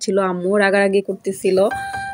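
A woman's voice talking, then near the end a short bell-like ding of steady chime tones as background music comes in.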